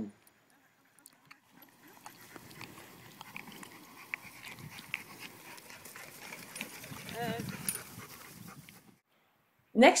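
A dog pulling a four-wheeled dog wagon as it approaches: a faint, steady rolling noise with small clicks, growing louder about seven seconds in. A brief "uh-huh" from a person joins it at that point.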